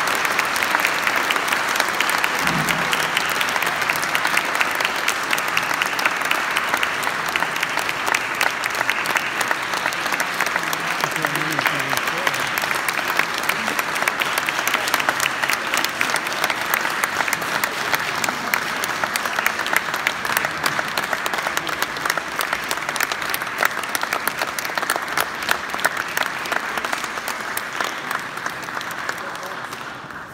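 Audience applauding steadily, the clapping thinning a little toward the end and stopping at the close.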